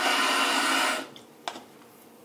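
Bathroom sink faucet running water into a paper cup for about a second, then turned off. A short click follows about a second and a half in.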